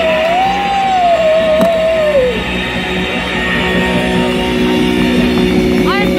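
Live garage-rock band playing loud, electric guitar to the fore, with a long wavering held note that drops away a little over two seconds in.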